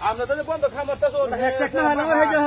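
People talking in raised voices, continuously.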